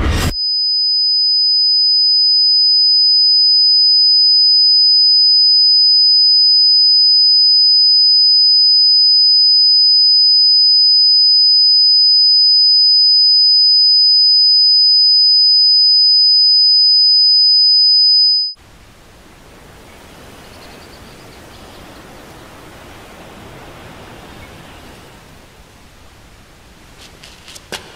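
A single steady, high-pitched electronic tone like ringing in the ears, held for about eighteen seconds and then cut off suddenly. After it comes faint, even outdoor ambience.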